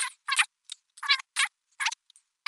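Irregular clatter of computer mouse and keyboard clicks, about six short bursts in two seconds.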